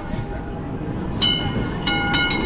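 Istanbul's red nostalgic Istiklal Street tram pulling away, a low steady rumble. About a second in, a high metallic ringing of several steady tones begins, renewed by a fresh stroke near the end.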